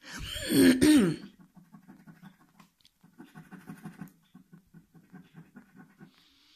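A person clears their throat loudly. Then a coin scrapes the latex off a scratchcard in quick, faint, rasping strokes, several a second.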